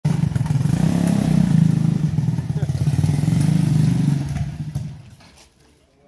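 The engine of a homemade open-frame buggy running loud and close, with rapid firing pulses, then fading away over the last second or so.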